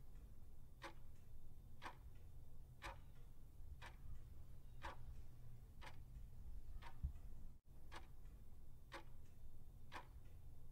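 Faint clock ticking, one tick a second, over a low steady hum, with a soft low thump about seven seconds in. The ticking counts down the half minute given to check answers.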